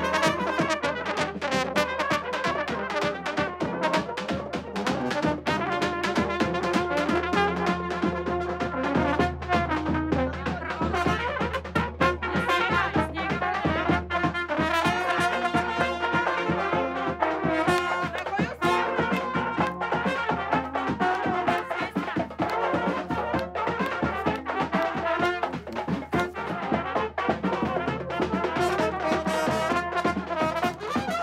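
Serbian wedding brass band, trumpets and horns with a drum beating time, playing a lively tune without a break.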